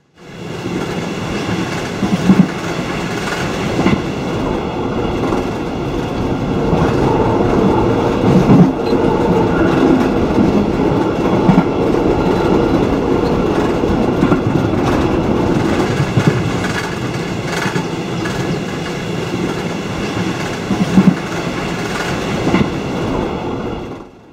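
Sylt Shuttle double-deck car-carrier train rolling along the track, with a steady running rumble and scattered wheel clacks over rail joints.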